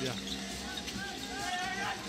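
Basketball arena during live play: steady crowd noise with a few faint voices rising over it about halfway through, and a basketball being dribbled on the hardwood court.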